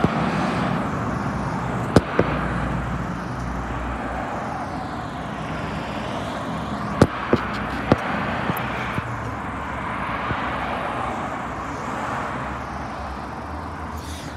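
Steady road traffic noise with cars going by, and a few sharp clicks in the middle.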